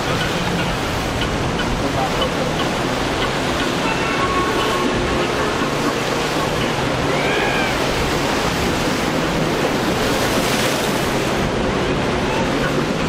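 Steady wash of surf and rough water with wind noise, under a low steady hum from the boat's engine as it runs through choppy inlet waves.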